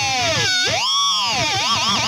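Squeal from a high-gain distorted electric guitar, played on the G string around the fourth fret. The pitch dips, swoops up in an arch and back down, then wobbles in a fast wavering vibrato, bent with the Floyd Rose whammy bar.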